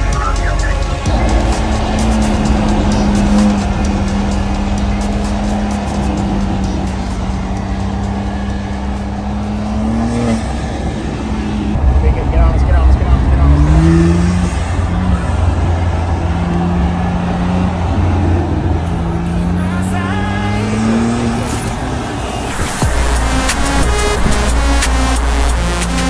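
Car engine accelerating, its pitch rising several times in the second half, over a bed of background music.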